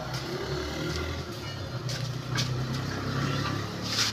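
A steady low engine rumble, like a motor vehicle running, with a few faint clicks over it.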